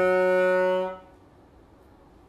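A long held note on a wind instrument, part of the film's scored soundtrack music. It stops suddenly about a second in.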